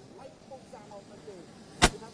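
Faint murmur of people talking, then a single sharp, loud crack a little before the end.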